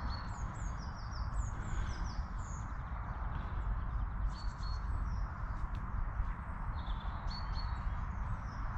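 Small birds chirping, with many short calls sliding quickly downward in pitch, over a steady low background rumble.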